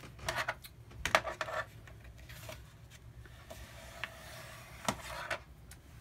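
Cardstock being folded along its score line and the crease rubbed down with a bone folder: a few short scraping strokes in the first second and a half, softer rubbing through the middle, and a light click about five seconds in.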